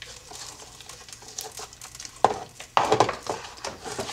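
Plastic air box lid and intake duct of a Lexus IS F being handled and lowered back over a new air filter: light rustling, then several sharp plastic knocks and clicks from about two seconds in.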